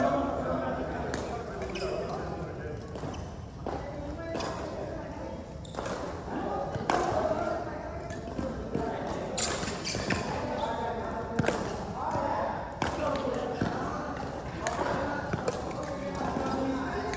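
Badminton rackets hitting a shuttlecock in a rally, with footsteps on a wooden sports floor: irregular sharp hits every second or two, over indistinct voices in the hall.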